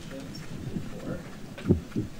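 Faint speech of a man talking away from the microphone, with a low thump near the end.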